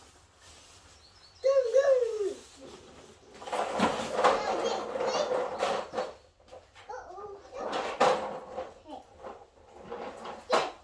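A young child's wordless vocal sounds: a high gliding squeal about a second and a half in and more short calls around seven seconds, with a few seconds of steady hissing noise in between.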